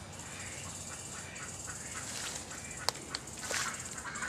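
Birds calling in short repeated calls over a steady, high, pulsing buzz, with two sharp clicks about three seconds in.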